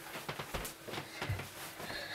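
A few soft knocks and steps: a person walking away across a small room after setting a guitar down.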